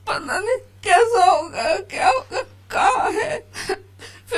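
A woman sobbing and wailing, her voice breaking into about five wavering cries with short breaths between them as she tries to speak.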